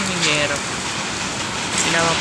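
Heavy typhoon rain pouring down, a steady dense hiss. A voice trails off in the first half second.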